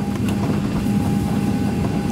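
Cabin noise of a Boeing 737-800 taxiing: a steady low hum of the engines at taxi power, with a thin steady high tone above it.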